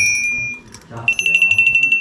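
Two small handbells shaken one after the other, the clapper striking fast: the first bell's ring fades out a little after half a second, then a second bell with a slightly higher pitch rings from about a second in.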